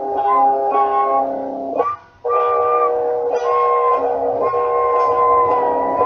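Music led by a guitar, with long held notes and a higher melody line that bends in pitch. It cuts out briefly about two seconds in.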